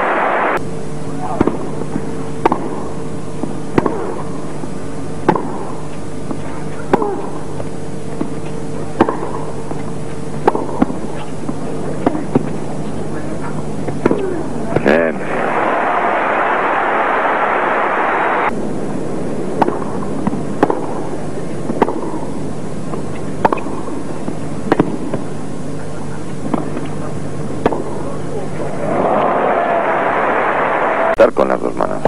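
Tennis ball struck by rackets in rallies: sharp cracks roughly every second and a half, over a steady hum. Crowd applause breaks out about halfway through and again near the end.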